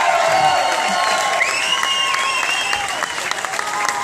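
Crowd applauding and cheering, with many overlapping shouts over steady clapping.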